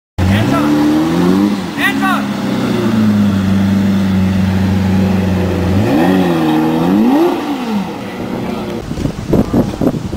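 Lamborghini Murciélago's V12 engine revving as the car moves off at low speed. It climbs about a second in and blips sharply near two seconds, holds a steady note, then gives two more short rev blips around six and seven seconds before dying away.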